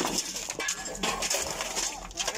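Broken concrete and debris clinking and clattering as rubble is shifted by hand, with irregular short knocks throughout.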